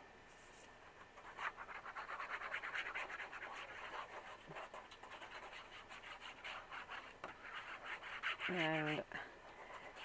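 Tip of a plastic squeeze bottle of liquid glue scratching along the edges of a sheet of patterned paper as glue is run around it: a quick, steady run of small scratches.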